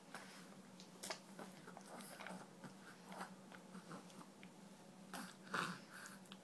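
Baby gumming and sucking on a piece of banana and his fingers: faint wet mouth smacks and clicks, with a louder smack near the end.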